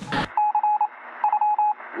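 Radio-style news-bulletin alert tone: two quick bursts of short electronic beeps at one steady pitch, each about half a second long, over a thin radio-like hiss.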